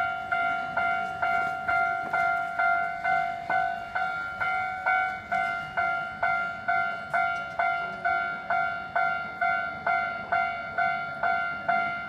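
Japanese railway level-crossing alarm: an electronic bell tone struck evenly about twice a second, each strike ringing briefly before the next. It signals that a train is approaching and the crossing is closing.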